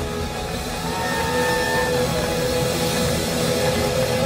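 Live blues-rock band playing, with long held notes that bend up in pitch over the band's low end.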